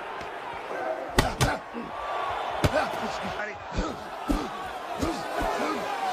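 Boxing-glove punches landing in a film fight scene: a series of heavy hits, the loudest two in quick succession about a second in, over steady arena crowd noise.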